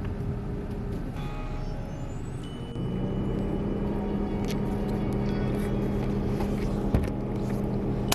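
Steady low motor hum, like a car engine running, that shifts slightly in pitch and level about one second and three seconds in. A few faint high thin tones sound over it in the first three seconds, and there is one small knock near the end.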